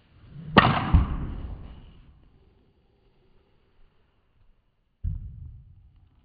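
A golf driver striking a ball, followed about a third of a second later by the ball hitting a golf simulator impact screen: a sharp crack, then a deeper thud, the sound dying away over about a second. A duller thump comes about five seconds in.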